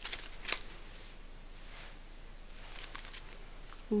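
Faint crinkling and clicking of a clear stamp sheet in its plastic packaging being picked up and handled, with one sharper click about half a second in.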